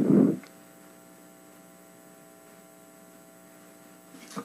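Faint, steady electrical mains hum, several steady tones held without change, after a man's voice trails off at the very start.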